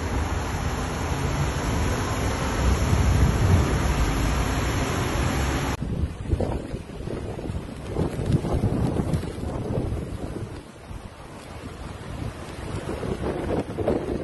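Strong wind buffeting the microphone over surf breaking against a seawall, a steady rushing noise with a heavy low rumble. About six seconds in, the sound cuts to a thinner recording of storm waves surging and crashing in repeated swells, whipped up by a cyclone.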